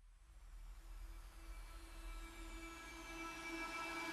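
Quiet intro of a background song fading in: sustained synth tones that slowly grow louder, with a faint high sweep gliding downward.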